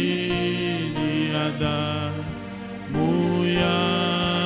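A man singing a slow worship song into a microphone, holding long drawn-out notes, with a new phrase starting about three seconds in over a steady low accompanying tone.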